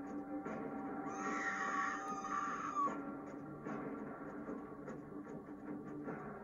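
Quiet background music from an animated story's soundtrack, with a brighter, higher sound laid over it for about two seconds starting about a second in.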